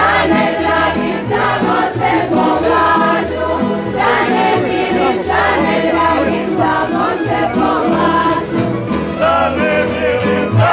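A women's group singing a Croatian folk song together over a steady plucked-string accompaniment with a regular bass beat about twice a second.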